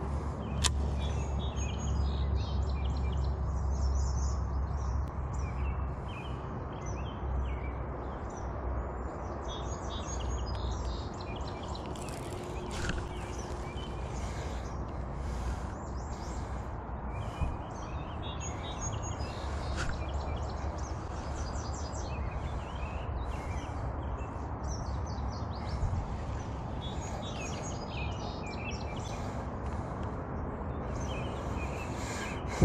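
Small songbirds chirping and twittering on and off over a steady low rumble.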